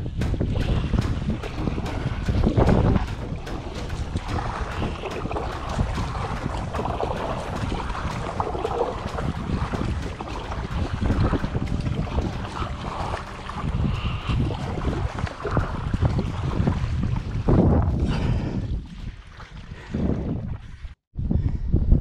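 Heavy wind buffeting the microphone of a camera on a fishing kayak being paddled into a headwind, with water noise around the hull. The rumble eases in the last few seconds and drops out briefly just before the end.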